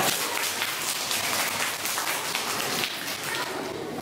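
A room of children applauding, many hands clapping at once, dying down near the end.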